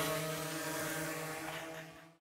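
A distant engine's steady, even drone, fading away over the two seconds.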